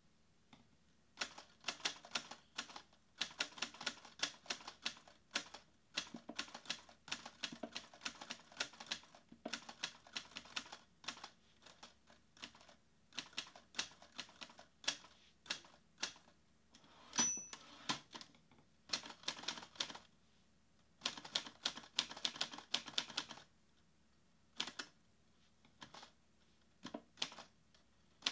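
Mechanical typewriter keys clacking in quick runs of a second or two, broken by short pauses, with a single ringing ding of the typewriter bell about seventeen seconds in.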